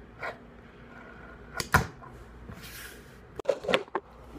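Fingerboard clacking on a tabletop as its tail is popped and it lands: a small knock at the start, one sharp clack a little under two seconds in, and a quick cluster of smaller knocks near the end.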